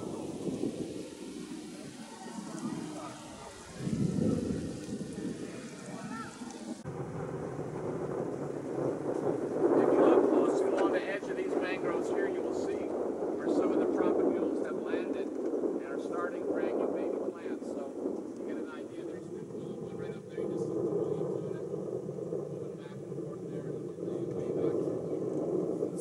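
Small boat's motor running steadily as the boat moves along, with wind on the microphone. The engine pitch rises briefly about three-quarters of the way through, and faint voices come and go.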